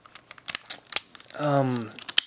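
Plastic parts and joints of a transformable toy figure clicking as they are handled, a quick run of small clicks lasting about a second. A short spoken sound follows near the end.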